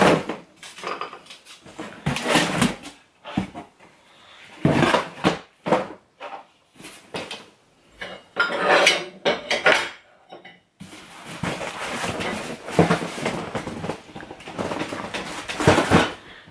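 Household items being handled and set down on a wooden table: irregular clinks, clatters and knocks of hard objects. Later comes a longer stretch of rustling and rummaging as the next box is searched.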